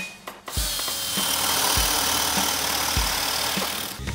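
Cordless drill with a 20 mm spade bit boring a hole through a timber upright, a steady whirring grind starting about half a second in. Background music with a slow beat plays underneath.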